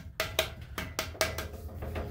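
A run of about nine light knocks and taps on a steel thermal expansion tank hanging off a copper pipe, each with a faint metallic ring. The tank is waterlogged, which is why the water heater's relief valve keeps spitting.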